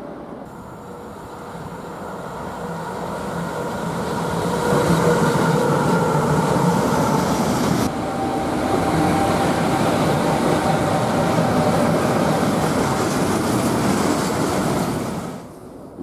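Electric-hauled freight train passing close by: wheels rumbling on the rails with a faint steady whine, growing louder over the first few seconds as it approaches. The sound stays loud, then cuts off suddenly shortly before the end.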